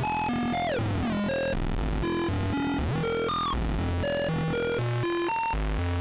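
Software modular synth VCO playing a square wave, stepped through a sequencer pattern of short notes about four a second, some notes sliding in pitch. Its pulse width is being modulated, so the tone colour shifts from note to note.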